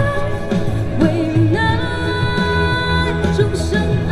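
A woman singing a Mandarin pop ballad into a microphone over amplified pop accompaniment with a steady bass line, holding long notes.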